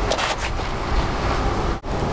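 Wind buffeting the microphone: a steady, loud low rumble with a hiss over it, cut off abruptly near the end.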